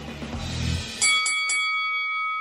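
A music bed with a low bass note ends, then a three-note chime is struck about a second in, the notes a quarter second apart, and rings on as it slowly fades. It is a radio break sting marking the cut to commercials.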